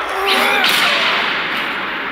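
Cartoon fight sound effects: a long rushing whoosh as a punch is thrown, with a brief grunt of effort near the start.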